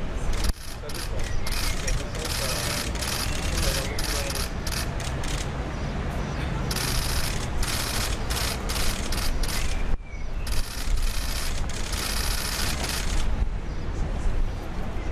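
Camera shutters clicking in rapid runs over the voices and movement of a crowd. The runs are densest around seven seconds in and again around twelve seconds in.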